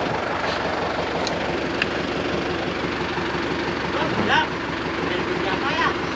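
Kubota tractor's diesel engine idling steadily.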